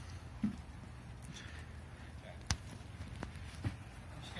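Three brief knocks and clicks close by, the sharpest about two and a half seconds in, over a low steady rumble.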